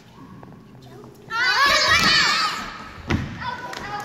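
A group of young children shout together for about a second, their high voices overlapping. About three seconds in comes a single thud on the wooden floor.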